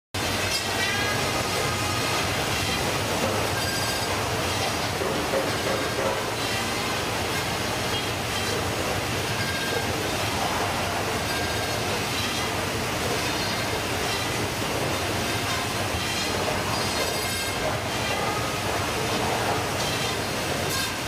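Automatic fish-processing machine and plastic modular conveyor running: a steady mechanical clatter and rumble with brief high squeals now and then.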